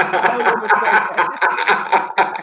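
Men laughing.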